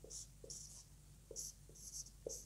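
Marker pen writing on a whiteboard: about four short, faint strokes of the tip across the board as a number and letter are written.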